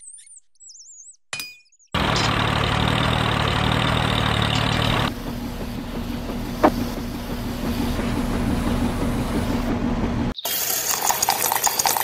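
A small engine running steadily, the sound of a miniature concrete mixer at work. It starts abruptly about two seconds in, changes tone about five seconds in, and breaks off briefly about ten seconds in before running on rougher. Birds chirp briefly at the start.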